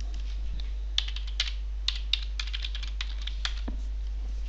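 Typing on a computer keyboard: about a dozen quick, irregular keystrokes spelling out one word, over a steady low electrical hum.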